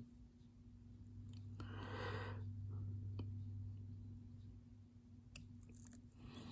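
Faint, quiet sound at a soldering bench: a steady low hum throughout, a soft hiss lasting about a second around two seconds in, and a few light clicks.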